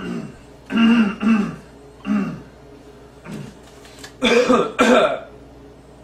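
A man clearing his throat and coughing in several short bursts. The loudest pair comes near the end.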